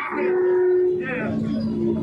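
A person's voice holding two long, steady notes, the second lower than the first, with a short spoken syllable between them about a second in.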